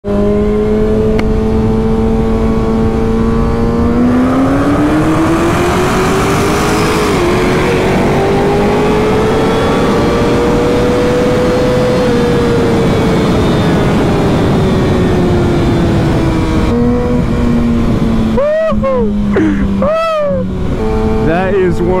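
Kawasaki sport bike's engine heard from the rider's helmet with wind noise. It holds steady revs, climbs under acceleration, drops at an upshift about seven seconds in, pulls up again and then eases off.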